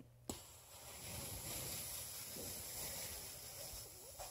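A person blowing one long, steady breath at a cloth towel held in the hand: a rush of air that starts suddenly just after the beginning and lasts about four seconds.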